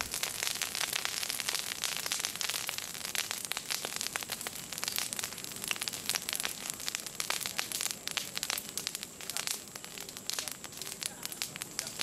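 Dry vegetation burning in a peat-land fire, crackling with a dense, irregular run of sharp pops and snaps.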